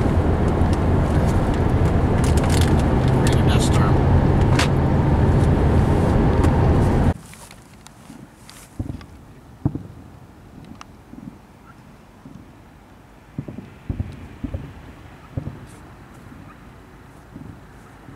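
Car interior road and engine noise, steady and loud with a low drone, cutting off abruptly about seven seconds in. This gives way to a much quieter background with scattered dull thuds from a distant fireworks display.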